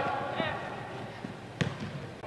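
A soccer ball being kicked on indoor artificial turf: a few short knocks, the loudest about one and a half seconds in.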